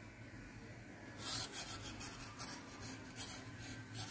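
Metal knitting needles scraping and rubbing against each other and the yarn as stitches are knitted together to bind off, a string of faint scratchy strokes starting about a second in.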